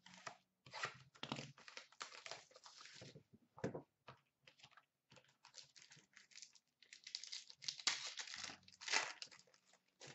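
Plastic wrapping of a trading-card box and pack being torn open and crinkled by hand, in irregular bursts that are loudest about a third of the way in and again near the end.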